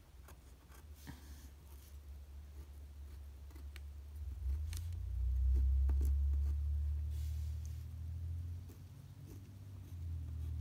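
Pen marking short dashes on paper along a ruler: scattered light ticks and scratches. A low rumble swells in about halfway through and fades near the end.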